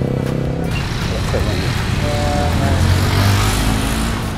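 A motorcycle engine running close by, a steady low hum with a broad hiss over it, swelling a little about three seconds in.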